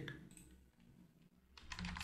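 Faint typing on a computer keyboard: scattered keystrokes, then a quick run of them near the end.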